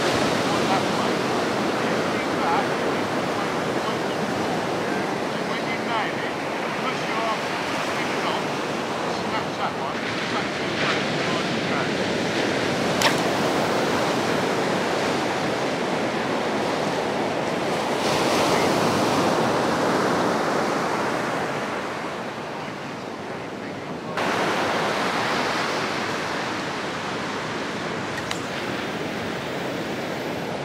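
Surf breaking and washing up a sand beach: a continuous rushing wash that swells and eases as the waves come in.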